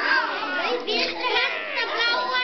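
A group of young children talking and calling out over one another, several high-pitched voices at once with pitch swooping up and down.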